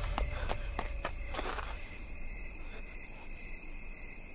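Crickets chirring steadily in a night forest ambience. A few faint clicks and a brief rustle come in the first two seconds.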